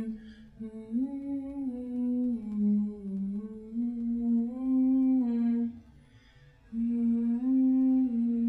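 A single voice humming a slow melody in long held notes that step up and down, with a short break about six seconds in.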